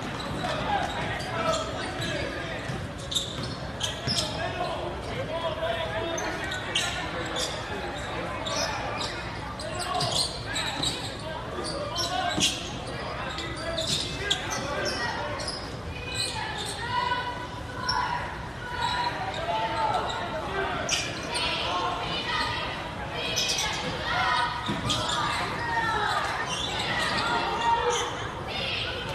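A basketball bouncing on a hardwood gym floor, with many sharp knocks scattered among the talk of spectators, all echoing in a large gymnasium.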